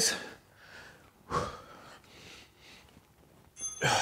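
A man breathing hard under exertion during seated dumbbell presses, with two short, forceful exhales about a second and a half apart.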